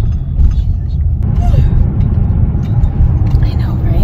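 Road and engine noise heard inside a moving car's cabin: a steady low rumble while it is being driven.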